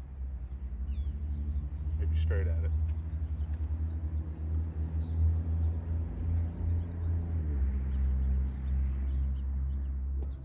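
A low, steady engine drone from a nearby motor, its pitch dropping slightly about seven and a half seconds in, with birds chirping.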